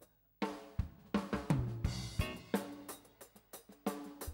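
A live rock band comes in together about half a second in: a drum kit with cymbal and snare hits, bass, electric guitar and electric keyboard playing a driving rhythm.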